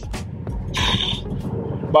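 Low, steady engine and road rumble inside a moving car's cabin, with a brief hiss a little before the middle.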